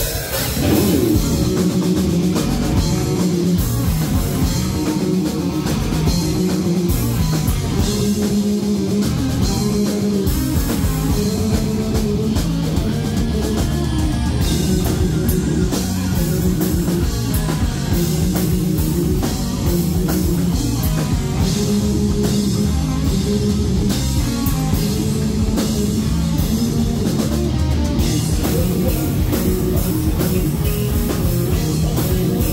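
Live heavy metal band playing loud: electric guitar, bass guitar and drum kit driving a repeating riff.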